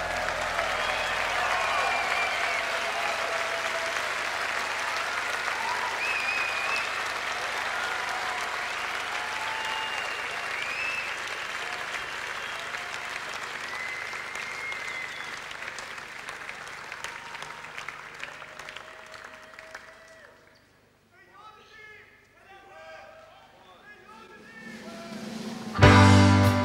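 Concert audience applauding and cheering, with whistles, fading away over about twenty seconds. A voice comes in briefly over a quieter few seconds, and the band starts loudly right at the end.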